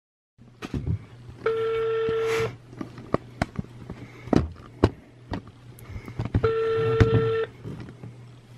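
Ringback tone from a mobile phone on speakerphone while an outgoing call rings: two steady one-second beeps about five seconds apart, over a low hum with scattered clicks between them.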